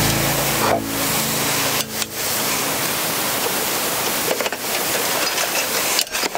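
A steady, even rushing hiss. The last low notes of music fade out under it in the first two seconds.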